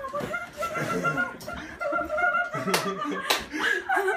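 Excited voices and laughter during a hug, with two sharp slaps near the end from hands patting a back.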